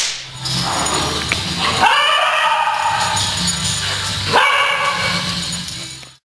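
Small dogs' voices over music, starting with a loud sudden burst, and with two rising calls about two seconds and four and a half seconds in.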